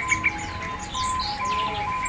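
Many caged songbirds chirping and twittering with short, quick calls, over a repeating pattern of steady, even tones that alternate between two nearby pitches.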